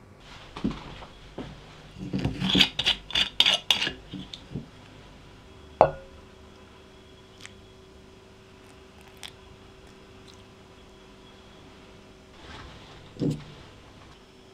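Metal utensils against a glass mixing bowl. A quick run of taps and clinks comes first, then one sharp clink that rings briefly, a few light ticks, and a soft thump near the end.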